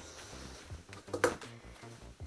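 Faint rustling of corduroy fabric as hands handle and arrange a gathered piece for pinning, with one short, louder sound just over a second in, over quiet background music.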